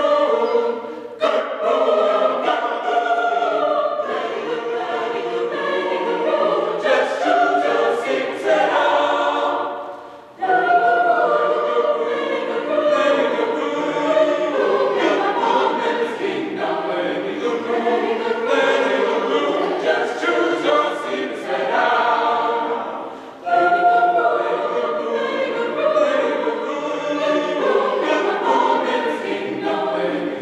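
A large mixed choir of men's and women's voices singing in harmony, unaccompanied. The singing breaks off briefly twice, about ten seconds in and again near twenty-three seconds, between phrases, then comes back in full.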